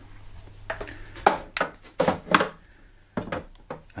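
Plastic media tray of an Eheim Professional 3 2080 canister filter knocking and clattering against the canister as it is handled and lowered into place, with several short, irregular knocks.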